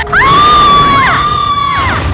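A woman's long, high-pitched terrified scream, held steady for about a second and a half before falling away near the end.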